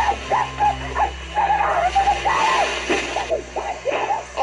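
Two women yelling and screaming at each other in a physical scuffle, in high, strained and mostly unintelligible shouts that run on without a break.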